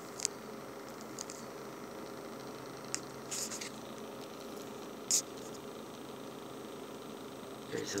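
Steady low background hum with a few brief, high-pitched ticks.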